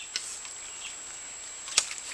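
Quiet outdoor background with one sharp, very short click near the end.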